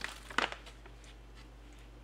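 Plastic snack pouch crinkling as it is handled: a few quick crackles in the first half-second, then only a low steady room hum.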